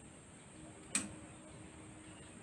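A single sharp click of a nail clipper snipping through a cat's claw, about a second in.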